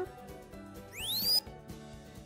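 Synthesized square-wave laser sound effect from the micro:bit MakeCode sound editor, about a second in. A half-second tone sweeps up in pitch, rising fast then levelling off near the top. It swells from quiet to loud and cuts off sharply. Soft background music runs underneath.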